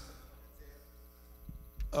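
Faint, steady electrical hum during a pause in a man's speech, with a soft click about three-quarters of the way through; his voice comes back right at the end.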